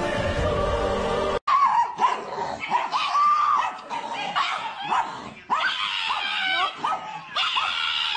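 A dog giving a rapid series of short, high, sliding calls, after a second and a half of music that cuts off abruptly.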